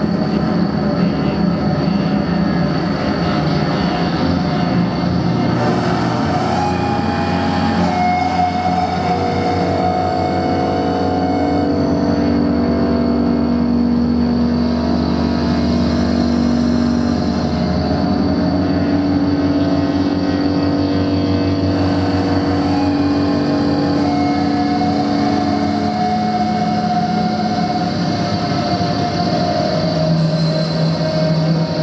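Live experimental drone music from electronics and effects pedals: a loud, dense, continuous drone of layered held tones that shift slowly in pitch, over a steady low rumble.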